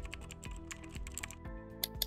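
Computer-keyboard typing sound effect: a quick, irregular run of key clicks with a louder click near the end, over background music.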